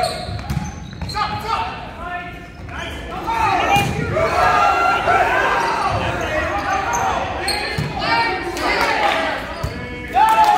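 Indoor volleyball rally in an echoing gym: sharp smacks of the ball being hit, short squeaks of sneakers on the hardwood court, and shouting from players and spectators, growing louder about three seconds in.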